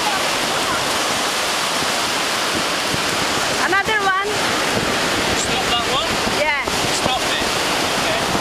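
Ocean surf washing up the beach with a steady rush, mixed with wind buffeting the microphone. Twice, about four and six and a half seconds in, a short high wavering cry sounds over the surf.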